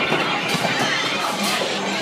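Bowling alley ambience: background music and the chatter of people, with a couple of faint knocks about half a second and a second and a half in.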